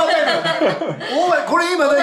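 People chuckling and talking.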